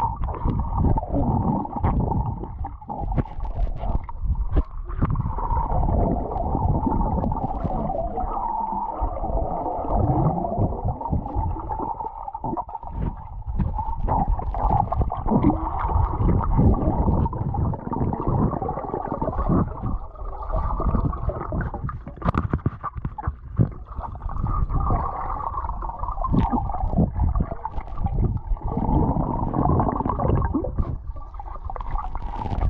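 Swimming-pool water heard through a submerged camera: a continuous muffled, rumbling churn and gurgle of water and bubbles stirred by swimmers moving close by.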